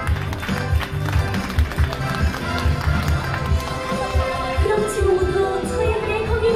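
Live pop band playing, with a steady drum beat under electric guitar and keyboards. A woman's singing voice comes back in strongly near the end.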